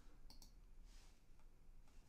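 Near silence with a few faint mouse clicks.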